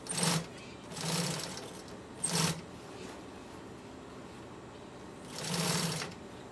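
Industrial sewing machine stitching black vinyl in four short bursts with pauses between them. The slow stop-start sewing eases the seam around the curve of a round table cover.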